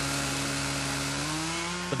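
Chainsaw running steadily under load, its pitch sagging slightly and then climbing back near the end, as it cuts down a racing yacht's keel bulb.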